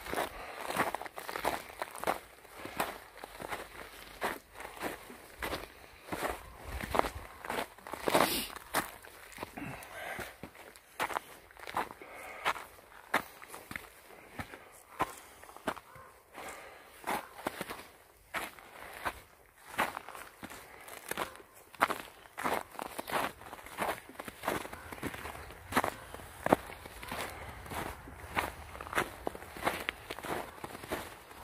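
Footsteps of a hiker walking uphill at a steady pace on a trail of thin snow over rocks and pine litter, each step a short, evenly spaced crunch.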